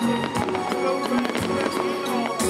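Fireworks display with shells bursting in several sharp bangs, over music.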